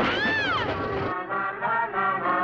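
A cat yowls once, a single rising-and-falling cry over a noisy clatter. About a second in, brass music begins.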